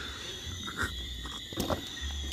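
Steady high-pitched chirring of night insects, with a few faint crackles from the wood cooking fire.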